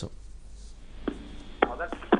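A short pause in talk, then about a second in a man's voice starts over a narrow-band telephone line, its first syllables coming with sharp clicks.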